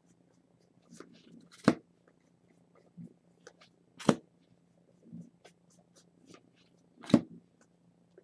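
Trading cards and packs being handled: three sharp snaps a few seconds apart among lighter clicks and ticks, over a faint low hum.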